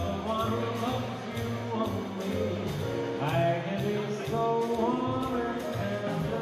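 A small live band playing: a man singing over a Yamaha keyboard, an upright double bass and a Sonor drum kit. A cymbal keeps a steady beat about twice a second.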